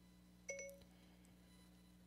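iPhone Siri activation chime: one short electronic chime about half a second in, the sign that the phone has woken to "Hey Siri" and is listening for a command.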